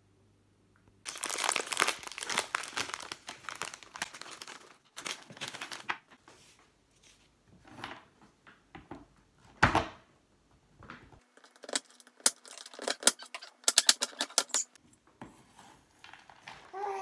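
A chocolate bar's wrapper torn open and crinkled for about three seconds, then a knife chopping a bar of dark chocolate on a wooden cutting board in scattered strikes, with a quick run of chops near the end.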